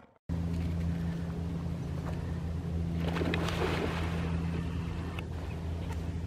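A steady low hum with an even background hiss that grows louder for about a second, three seconds in.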